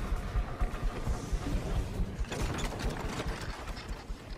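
Mechanical sound effects of turning gears and ratchets: dense fine clicking over a low rumble, turning brighter with a burst of clattering about two seconds in.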